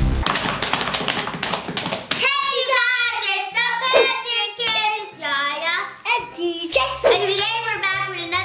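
Upbeat music with a dense beat for the first two seconds, then children's voices calling out in a singsong chant over background music with steady bass notes.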